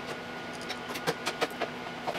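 A scatter of faint, short clicks from a hex key turning an adjustment screw on a laser mirror mount, over a steady low room hum.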